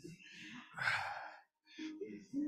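A person sighing: one long, breathy exhale about a second in, breathing out after exertion during a workout.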